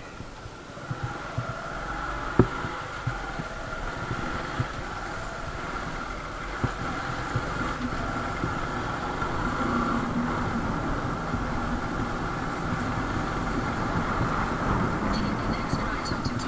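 Motorcycle engine running steadily as the bike is ridden along a rough lane, picking up a little in level over the first couple of seconds, with a few short sharp knocks over bumps.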